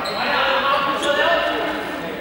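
Several people talking at once, indistinctly, in a large echoing sports hall, with one short sharp knock about a second in.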